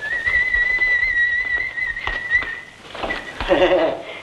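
Someone whistling one long, slightly wavering note that swoops up at the start and is held for nearly three seconds. A brief vocal sound follows near the end.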